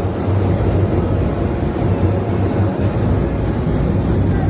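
Loud, dense noise of a large packed crowd of mourners, with a heavy low rumble underneath and no distinct voices or music standing out.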